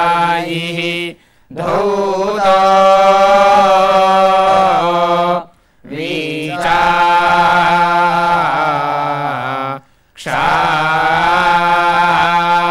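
Several men's voices chanting a devotional hymn together in long, steadily held notes. The chant stops for a breath three times: about a second in, near the middle, and about ten seconds in.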